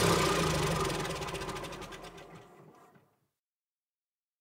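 Tractor engine running steadily, fading out and gone about three seconds in.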